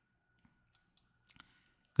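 A few faint, sharp computer clicks in a pause, advancing a presentation slide, over a faint steady high tone.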